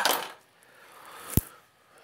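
A beer bottle's crown cap being pried off: a faint scrape building up, then a single sharp metallic click about a second and a half in.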